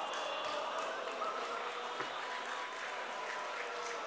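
Live audience applauding and laughing in a hall, in reaction to a joke's punchline.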